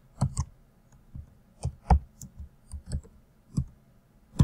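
Computer keyboard typing: about ten short, irregularly spaced key clicks.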